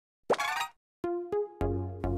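A short cartoon-style plop sound effect, then, about a second in, a light musical jingle starts with a few clicks and held notes.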